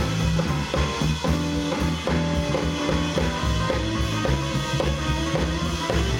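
Live blues trio playing an instrumental passage: electric guitar, drum kit and upright double bass.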